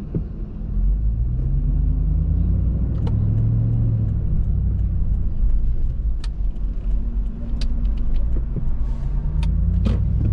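Car engine and road rumble heard from inside the cabin while driving, the engine note rising twice as the car speeds up. Light ticks come in the second half, and there is a sharp knock near the end.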